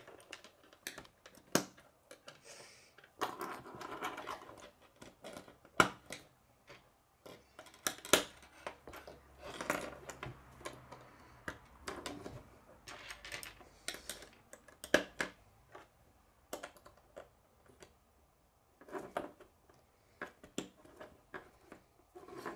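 Plastic K'nex rods and connectors clicking and clattering as they are snapped together and handled on a wooden tabletop: irregular sharp clicks with short pauses between them.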